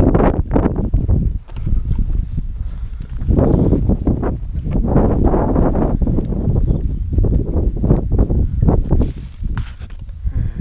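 Footsteps on a paved lane under a heavy, irregular low rumble of wind and handling noise on a handheld camera's microphone.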